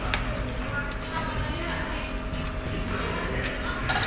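A few sharp metal clinks of a ladle and spoon against the pot and bowl: one just after the start and two close together near the end. Under them runs a steady low hum, with faint voices in the background.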